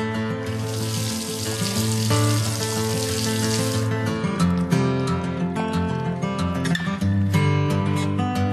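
Background music with steady sustained notes, with a rush of pouring, draining water laid over it from about half a second in until about four seconds in, as the buoyancy tank is hoisted out of the sea.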